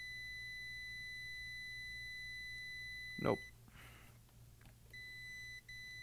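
Fluke digital multimeter's continuity beeper sounding a steady high beep while the test probes rest across an in-circuit resistor: the beep signals a low-resistance reading of a few ohms. It cuts off about three and a half seconds in and sounds again near the end, with a brief break. A short click just after three seconds is the loudest sound.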